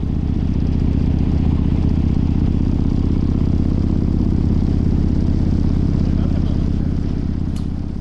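Harley-Davidson motorcycle's V-twin engine running at a steady cruise, a constant low drone on the road.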